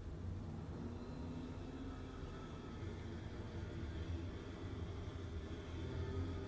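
Quiet room tone: a low, steady hum with a faint hiss and a faint high whine.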